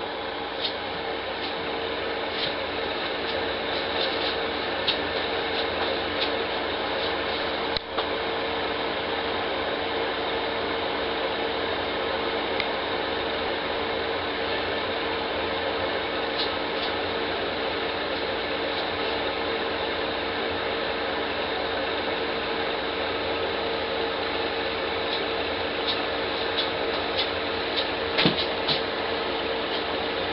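Small aquarium filter running with a steady hum and hiss, with a few faint clicks scattered through.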